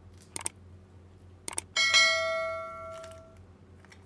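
Subscribe-button sound effect: a couple of short mouse clicks, then a bright bell ding just under two seconds in that rings and fades over about a second and a half.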